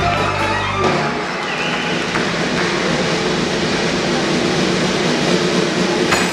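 A live circus band playing. About a second in, the tune gives way to a steady, noisy sustained wash with little melody in it.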